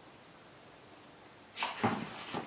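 Near silence, then about a second and a half in, a cat jumping into a cardboard box: a few sudden thumps and scrapes of paws and body against the cardboard.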